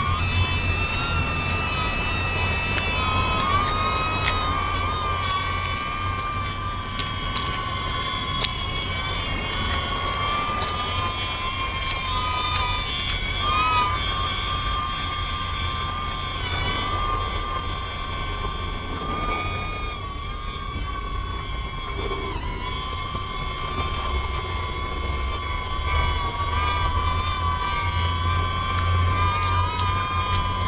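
DJI Neo mini drone's propellers whining in flight, the pitch wavering up and down as it is steered around.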